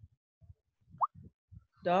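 A few faint low knocks and one short, sharp rising plop about a second in, heard over an online call; a voice speaks a word near the end.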